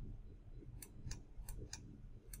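Faint clicks of a computer mouse, four short ones in the second half, over a low steady room hum.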